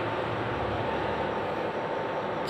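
Electric room heater running with a steady whirring noise and a faint thin high hum.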